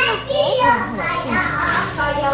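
A young child's high-pitched voice chattering without clear words.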